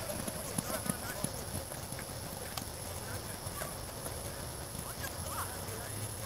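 Footfalls of players running on an artificial-turf field, heard as scattered short knocks, with faint distant shouting voices near the start and again about five seconds in.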